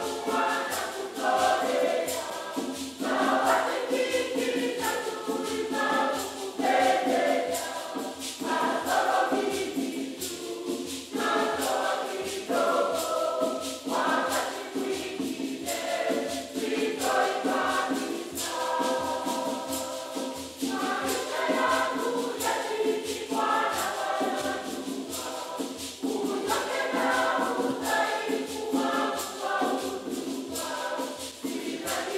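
Church choir singing a Swahili hymn, accompanied by a steady percussion beat.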